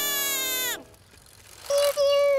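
Cartoon cows mooing in a high, voiced style: a long, held chorus of moos that falls away and stops a little under a second in, then a shorter single moo near the end.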